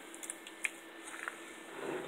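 Pork fat rendering into lard in a stainless stockpot, faintly bubbling and crackling as it is stirred with a wooden spoon, with one sharper tick a little over half a second in. The fat is near the end of rendering, at about 250°F, with most of its water cooked off.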